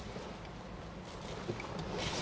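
Wind rumbling on the microphone over faint outdoor background noise, with a small knock about one and a half seconds in.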